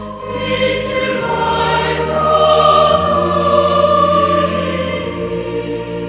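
Recessional hymn sung in Korean by several voices, over held accompanying notes that step to a new chord about every two seconds.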